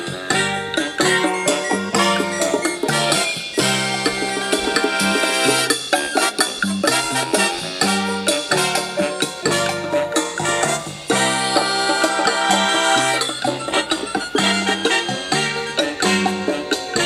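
Music with a regular beat played over Bluetooth through the small built-in speaker of an Imperial Dabman OR1 emergency radio at half volume, cutting in suddenly at the start.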